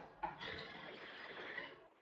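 Faint room noise picked up by a lecture microphone, with a short soft sound about a quarter second in; it cuts off suddenly to dead silence near the end.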